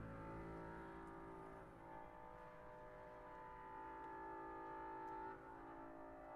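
Quiet sustained tones from a contemporary chamber ensemble (flute, clarinet, viola, double bass, piano and percussion), several notes held together. A higher held note swells about a second in and breaks off a little past five seconds.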